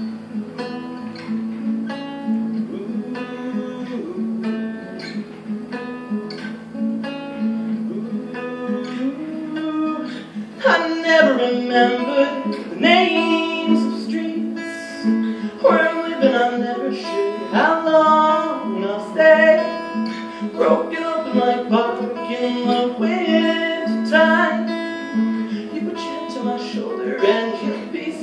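Acoustic guitar played solo in an instrumental passage of a song, picked softly at first and then played harder and fuller from about ten seconds in.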